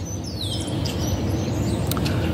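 A bird gives a single short call, a whistle sliding down in pitch about half a second in, over a steady low outdoor rumble.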